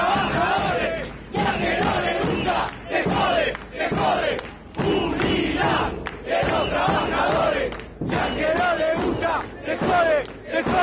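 A crowd of protesters chanting a slogan together, shouted phrases repeating with short breaks between them.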